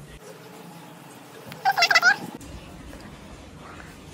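A single short, high, wavering vocal call about a second and a half in, lasting under a second.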